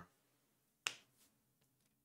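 A single sharp click a little under a second in, followed by a softer tick, against near silence.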